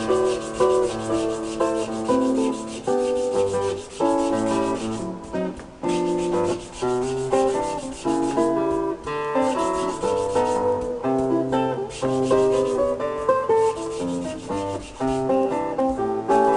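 Hand sanding of a wooden kazoo body clamped in a bench vise: repeated rubbing strokes of abrasive on wood, heard over acoustic guitar music.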